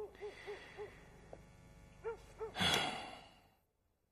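Quiet, quick whimpering sobs, then a long heavy sigh about two and a half seconds in; the sound cuts off near the end.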